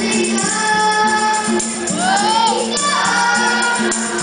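Boys' nasyid vocal group singing in harmony into microphones over a steady rhythmic beat, with a swooping vocal run around the middle.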